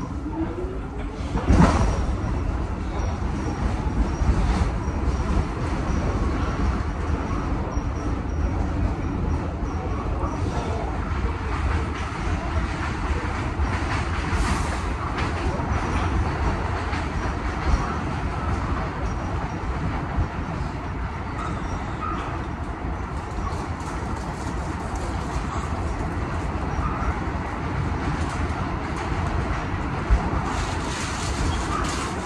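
R46 subway train running on elevated track after pulling out of the station, heard from inside the car: a steady rumble of wheels on rail and motors, with one loud bang about two seconds in.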